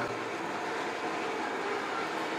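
Steady low background noise of the room in a pause between speech, with no distinct event.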